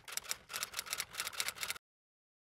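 Typing sound effect: a rapid, even run of key clicks, about eight a second, that stops short near the end.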